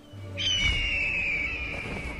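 Cartoon sound effect: a long whistle that glides slowly downward in pitch, starting about half a second in, over a low rumble.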